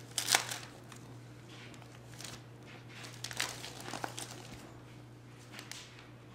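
Wrapping paper crinkling in a baby's hands, in irregular short rustles, the loudest about a third of a second in.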